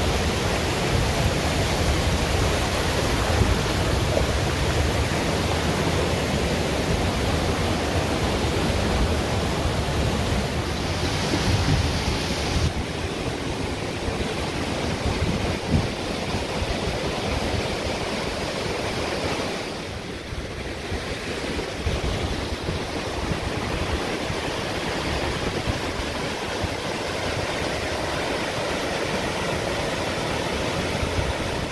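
Waterfall pouring into a rock plunge pool: a steady, even rush of falling water.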